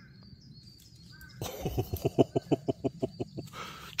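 A puppy's paws running quickly over dry leaf litter, a fast patter of about five steps a second starting about a second and a half in. Faint bird chirps before it.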